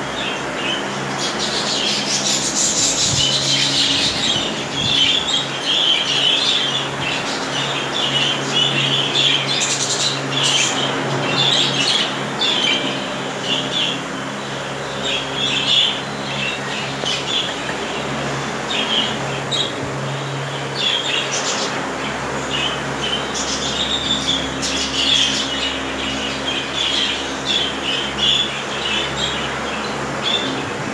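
Many budgerigars chirping and chattering continuously in short, overlapping calls, over a steady low hum.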